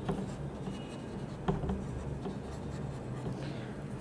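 Marker writing on a whiteboard, a few faint strokes as the words are finished.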